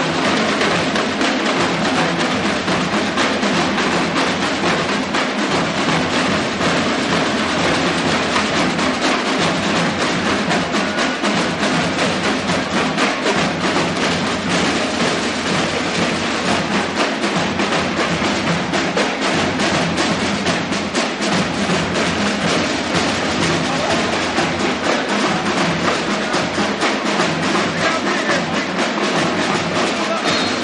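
Marching drumline playing fast, unbroken drumming on tenor drums, snare drums and bass drums.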